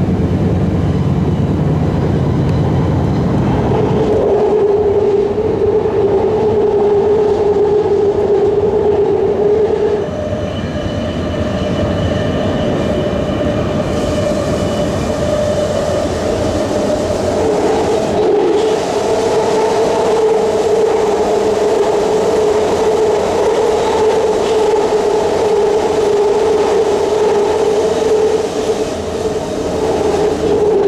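Inside a BART train car while it runs: the steady rumble and rush of the train on the rails, topped by a droning whine. The whine jumps higher in pitch about ten seconds in and drops back a few seconds later.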